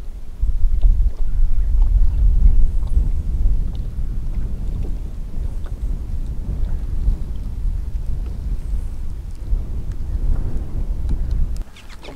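Wind buffeting the microphone: a low, gusty rumble that rises about half a second in and is strongest over the next few seconds, then eases a little.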